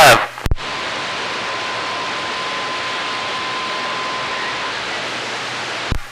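CB radio receiver static: a click, then a steady hiss from the radio's speaker between transmissions, with a faint steady whistle that stops about a second before the hiss does.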